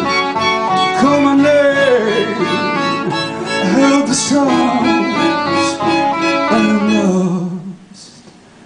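Live chamber-pop ensemble of clarinets, violins and cello playing sustained, sliding melodic lines. About seven and a half seconds in, the music breaks off into a quiet pause.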